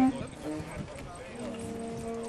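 People talking outdoors, with a short loud sound right at the start and a steady held tone starting about three-quarters of the way in.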